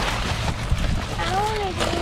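Cardboard packaging rustling and crinkling as it is grabbed and carried. About a second and a half in there is a short voiced hum that rises and falls.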